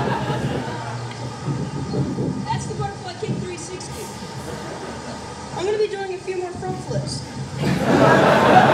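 Indistinct voices, a few short pitched utterances, over a steady low rumble.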